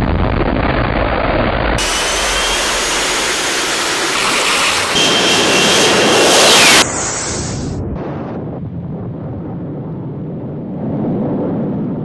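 F-35B jet engine at high power during a short takeoff roll, a loud rushing noise with a high whine that builds and then cuts off abruptly about seven seconds in. Fainter, steadier jet noise follows as the aircraft climbs away.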